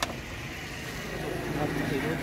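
Steady low rumble of a motor vehicle running, with faint voices.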